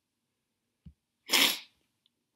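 A short, loud burst of breath into the microphone, lasting under half a second, preceded by a faint low click.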